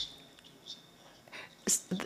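A pause in a man's speech at a lectern microphone: faint room tone with soft breath noises, and a short breathy intake about three quarters of the way through, just before he speaks again.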